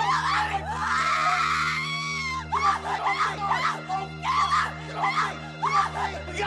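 A woman screaming in terror: one long scream, then a run of shorter shrieks and cries.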